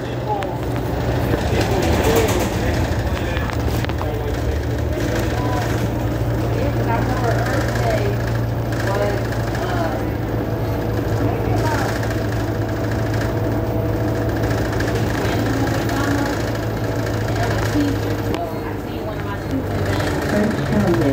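Bus interior: the bus's engine and running gear give a steady low hum throughout, with faint voices of other passengers in the background.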